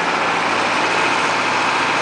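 Old bus's engine running steadily on the move, heard from inside the cab together with its road noise.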